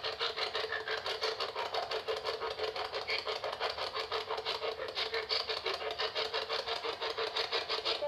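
PSB-11 spirit box sweeping AM and FM together: radio static chopped into a rapid, even pulsing of about ten beats a second.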